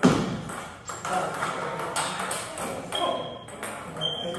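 Table tennis rally: a celluloid ball clicking off the paddles and the table, about one hit a second. The first hit is the loudest.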